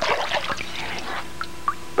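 Water splashing in a sink for about a second, then two single drips.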